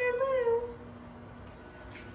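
A woman's short, high-pitched, drawn-out exclamation, like an 'ooh', that wavers up and down and ends under a second in. After it, only a faint steady hum.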